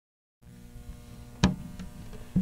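A low steady hum starts about half a second in, with one sharp hit about a second and a half in.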